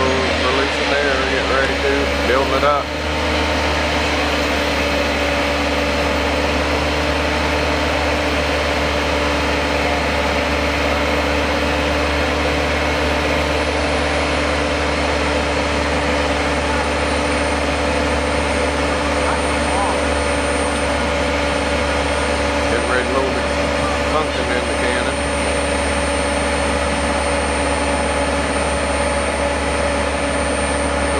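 An engine on the fire-truck pumpkin cannon rig running at a steady speed, a constant low hum with a few held tones. A faint high whine joins about halfway through.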